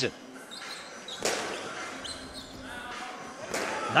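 Live court sound of a basketball game in a large arena: a basketball bouncing and players moving on the hardwood over a low hall background, with one sharp hit about a second in.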